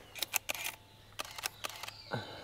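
Camera shutter firing several times in quick succession, in two short clusters of clicks, as the camera is used at a slow shutter speed.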